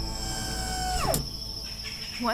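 A held drone of several tones sweeps steeply down in pitch and cuts off about a second in, leaving a steady high cricket trill.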